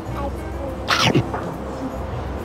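A short cat-like meow about a second in, falling in pitch, over background music.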